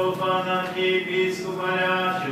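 Orthodox liturgical chant sung by men's voices: long held notes with a steady low tone under a slowly moving melody.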